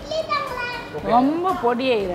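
Speech: a high-pitched voice repeating 'thank you'.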